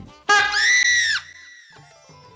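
A woman's high-pitched scream, about a second long, starting a moment in and then dropping to a faint tail.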